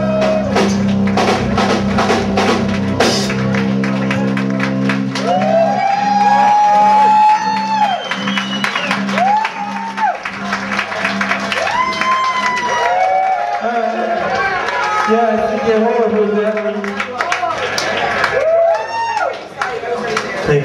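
Live psychedelic rock band improvising: drums and cymbal crashes over a sustained bass drone for the first few seconds. After that the drumming thins out and long wailing tones slide up and down over the band, and the deep bass drops away about halfway through.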